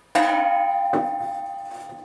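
Folded stainless steel sheet element struck and ringing like a bell, with a clear tone fading slowly, and a second knock about a second in.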